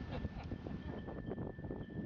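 Wind rumbling on the microphone aboard a boat on open water, a steady low rumble with faint crackles.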